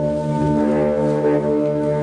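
Concert wind band of clarinets and brass playing slow, long-held chords, with the harmony shifting about half a second in.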